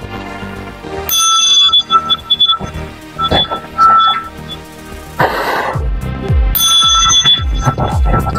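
A metal chime bell struck and ringing with clear, high, steady tones, about a second in and again late on.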